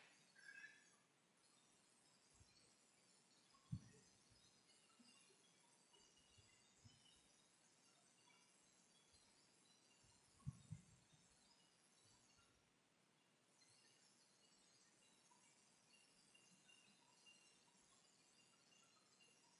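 Near silence: room tone, with a faint knock about four seconds in and two more close together about ten seconds in.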